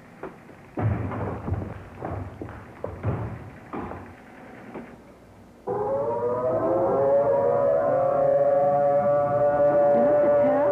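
Civil defense siren starting up about six seconds in: its pitch rises and then holds a steady tone. It is being sounded as a tornado warning, in earnest and not as a test. Before it comes a stretch of irregular knocks and clatter.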